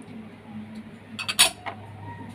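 A small ceramic dish clinking against a bowl as calamansi juice is tipped over marinating pork: a quick run of clicks with one sharp knock a little past halfway.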